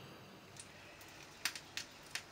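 Faint steady hiss with a few short sharp clicks, the loudest about halfway through.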